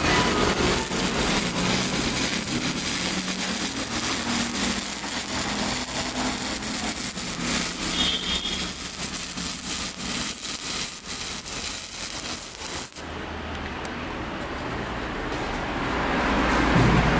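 Welding arc on a steel pipe joint, a steady crackling hiss that cuts off suddenly about thirteen seconds in when the arc is broken.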